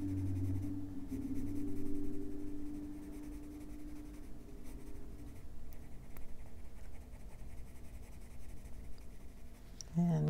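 Coloured pencil scratching on coloring-book paper in small back-and-forth strokes, with a low steady hum over the first few seconds.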